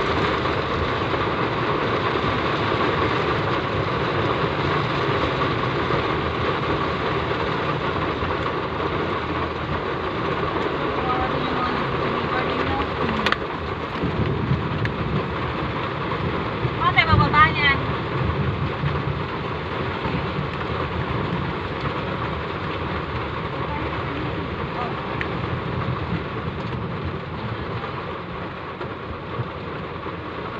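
Heavy rain on a car, heard from inside the moving car as a steady rushing noise that eases slightly in the second half. About halfway through there is a brief warbling sound.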